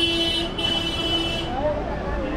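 A horn sounds in two blasts, the first cut short about half a second in and the second stopping about a second and a half in, over a steady lower hum; talking resumes after it.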